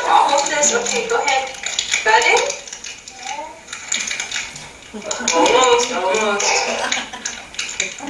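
Voices of a toddler and her mother talking, played back from a video through room speakers, over the crinkle and rustle of a plastic fruit snack wrapper that the child is working to open.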